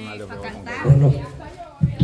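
Speech: men's voices talking and calling out, with no other clear sound.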